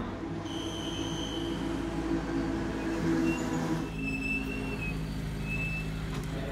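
Formula Renault 2.0 single-seater engines running steadily on the grid: a steady mechanical hum with a few thin, high whines over it. The sound changes about four seconds in.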